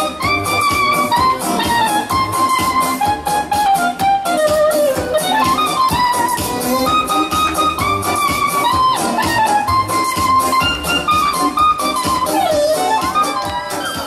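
Brass band playing a slow melody: a lead horn holds long, slightly wavering notes over a low sousaphone and trombone accompaniment with a steady pulse.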